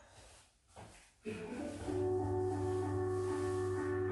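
A brief near-silent gap, then instrumental jazz hip-hop background music comes in about a second in, with sustained chords over a low bass line.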